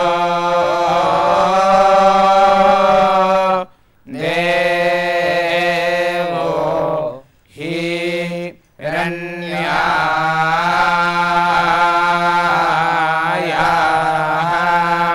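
A group of young men chanting devotional hymns in unison into microphones, on a steady reciting pitch. The phrases are long and held, with short breaks for breath about four seconds in and about eight seconds in.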